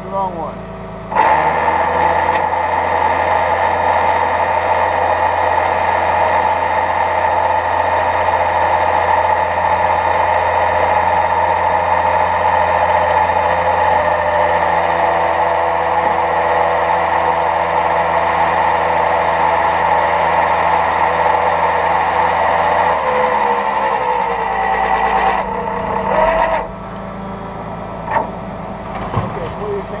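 Rollback tow truck's hydraulic winch system running, a loud steady whine over the truck's engine held at raised revs. It starts suddenly about a second in and cuts off near the end.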